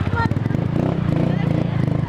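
Motorcycle engine running at low road speed, its firing pulses coming in an even, rapid beat as the bike rides slowly along a street.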